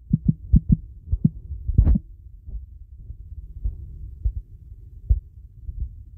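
Irregular soft low thumps, several a second at times, over a steady low hum, with one louder thump about two seconds in.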